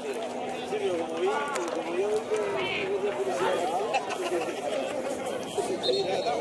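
Several people talking over one another in a steady chatter, with no single voice standing out. A faint steady hum runs underneath.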